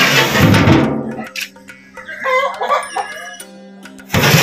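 Basmati rice poured from a tray into a large pot of boiling water, a rushing splash that fades after about a second. About two seconds in, a rooster crows.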